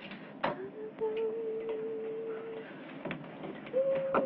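A person humming long, steady single notes, with a few soft clicks in between.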